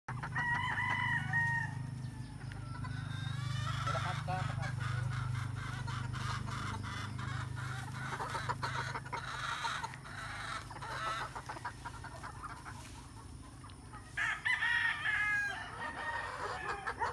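Gamecocks crowing: one crow near the start and another near the end, with short clucks from the flock in between.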